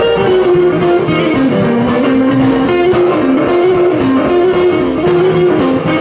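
Live blues band playing an up-tempo boogie, an electric guitar carrying a melodic lead line over upright bass and a steady beat.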